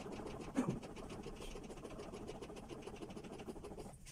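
Fast, even clicking from CPR training manikins being given chest compressions, with a louder thump about half a second in.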